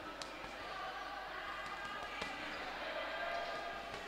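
A few sharp knocks from the boxers in the ring, the two clearest about two seconds apart, over voices carrying in a large hall.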